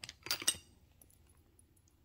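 A few quick clicks and a light metallic clink of small hard objects being handled, about half a second in, then quiet room tone.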